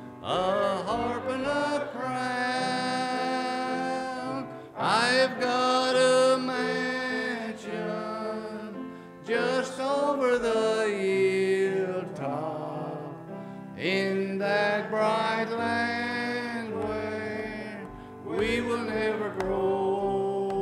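A man singing a slow gospel song over instrumental accompaniment, in long held phrases with short breaks between lines.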